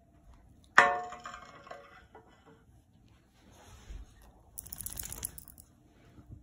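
A plate set down on a glass tabletop: one sharp clink about a second in that rings for about a second. Near the end, a brief scratchy rustle.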